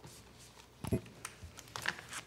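Laptop keyboard typing in scattered keystrokes, with a heavier knock about a second in.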